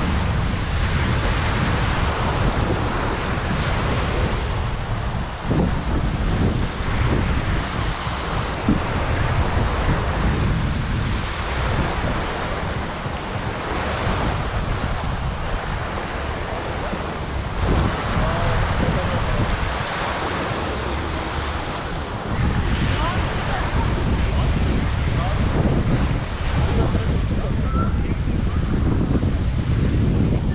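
Wind buffeting the microphone in gusts over a steady wash of small waves on a sandy shore.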